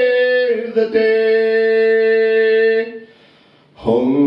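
A man singing unaccompanied into a microphone in a folk style, holding one long note through the middle, then a brief pause near the end before the next line starts.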